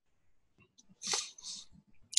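A brief breathy noise from a person, in two quick bursts a little over a second in, after near silence.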